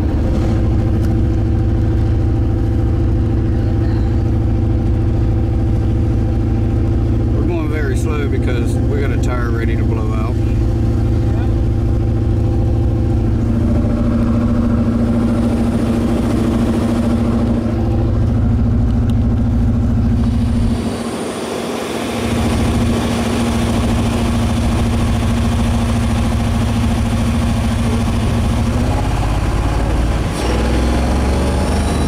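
1990 Chevrolet Corvette's V8 running under way, heard from inside the cabin; its note changes a little under halfway through and the low rumble drops away briefly about two-thirds in. The owner finds it hitting on all eight but a little rough, blaming water in the fuel after the car sat too long.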